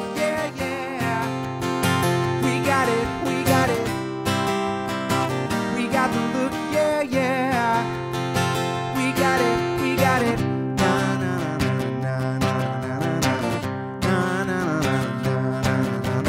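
Acoustic guitar strummed steadily, with a solo singing voice coming in and out between strummed bars.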